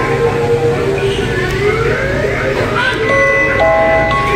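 Electronic music and sound effects from animated Halloween decorations: rising, sliding tones about a second in, then a run of held electronic notes near the end, over a steady background hum of store noise.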